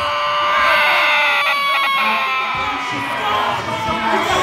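Megaphone siren sounding one long tone that slowly falls in pitch, over a crowd of shouting voices.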